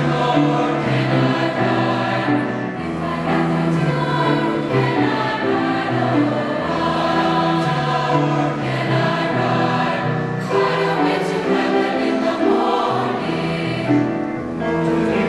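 Mixed-voice high school choir singing in parts, accompanied by a grand piano.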